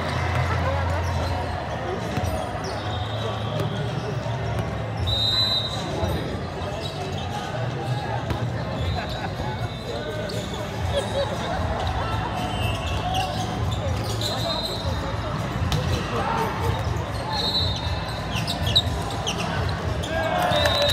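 Volleyball rally on an indoor sport court: sneakers squeaking on the court surface several times and the ball being struck, with a sharp hit near the end, over steady chatter of players and spectators echoing in a large hall.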